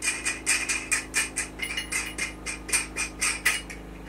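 A steel nut being spun by hand onto a 3/8-inch bolt through the bottom of a frying pan, the metal parts and washers clicking and scraping against each other. It makes a quick series of small clicks, about four a second, that stops shortly before the end.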